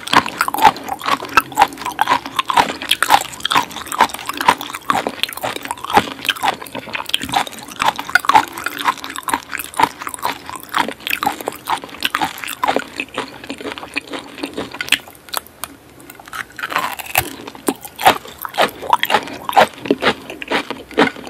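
Close-miked chewing of raw coconut palm weevil larvae (coconut worms) dressed in fish sauce: a fast, dense run of mouth clicks and crunchy bites. It thins out for a couple of seconds past the middle, then picks up again.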